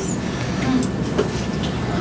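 Steady low background rumble of a classroom, with a few faint light clicks.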